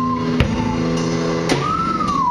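Lo-fi indie rock duo playing live: a held guitar chord rings under two drum hits. Near the end a high note swells and slides downward.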